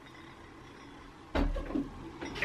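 Quiet room tone, then about a second and a half in a sudden bump and rustle of handling as a glossy laminated tote bag is moved right up against the microphone.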